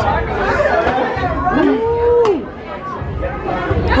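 Several people talking at once in close, lively chatter, with one voice drawing out a long held sound about halfway through.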